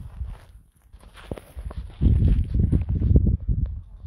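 Footsteps crunching on a gravel and shingle beach, an irregular run of steps, with a heavier low rumble from about halfway through.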